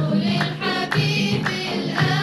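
A group of women singing together, with sharp handclaps keeping time about twice a second.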